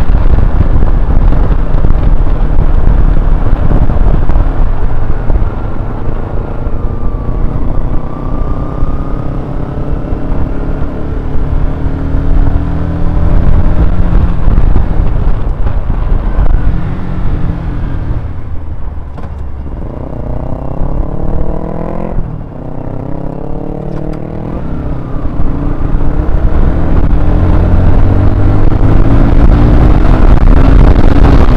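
Honda CBR125R's small single-cylinder engine heard from the rider's position under heavy wind noise on the camera microphone. Midway the bike slows and the engine note drops, then it accelerates, the pitch climbing with a gear change about 22 seconds in, and the wind noise builds again near the end as speed rises.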